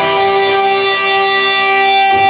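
Electric guitar natural harmonics at the 12th fret on the G, B and high E strings, ringing together as a steady, sustained chord of pure tones.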